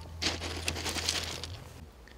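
Rustling and scraping handling noise on the camera's microphone as the camera is picked up and moved, with a few small knocks, cutting off suddenly near the end.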